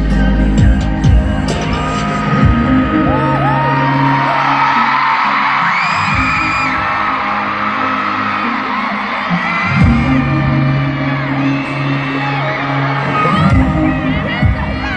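Live pop music over a stadium sound system, with fans screaming and cheering over it. The heavy bass drops away for a few seconds in the middle and comes back.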